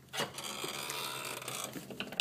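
A glass back door opening: a sharp click about a fifth of a second in, then about a second and a half of steady scraping, rubbing noise as it moves.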